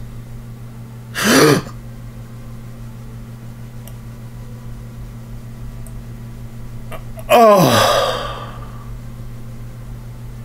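Two short, loud gasp-like vocal outbursts over a steady low hum: a brief one about a second in, and a longer one near the end whose pitch falls.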